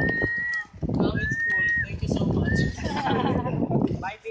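High-pitched excited squeals from onlookers watching dolphins: three held shrieks, about half a second or more each, amid a babble of excited voices.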